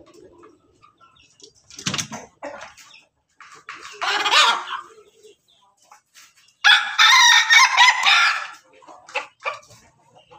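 A crossbred rooster (pelung × bangkok × ketawa) crows once, a long call of about two seconds in the second half that is the loudest sound here. Around it the flock gives shorter clucks and calls, a louder one about four seconds in.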